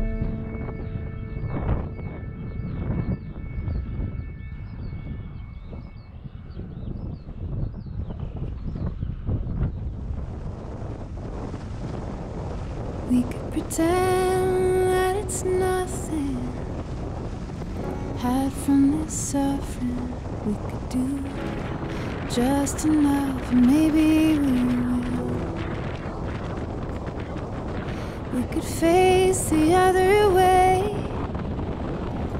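Wind buffeting the microphone in gusts, under the last faint notes of a fading music chord. About halfway through, a slow melody comes in over the continuing wind rush.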